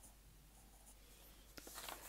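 Faint scratching of a pencil writing figures on lined notebook paper.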